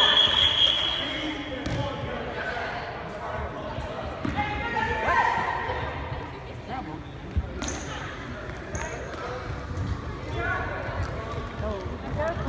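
Referee's whistle, one steady blast in the first second or two, then the gym's background: spectators' voices and a basketball bouncing on the hardwood court.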